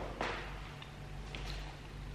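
Quiet eating sounds from a metal fork and mouthfuls of cake: one sharp click about a quarter second in, then a few faint ticks.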